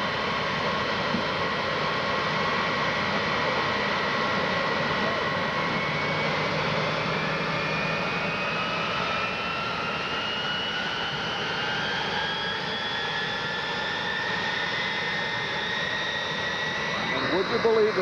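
Jet engines of Air Force One, a Boeing 707-based VC-137C, running on the ground: a steady roar with a whine that climbs slowly in pitch as the engines spool up for taxiing.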